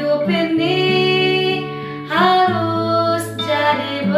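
A woman singing an Indonesian Christian worship song in long held notes, two phrases, over a strummed acoustic guitar.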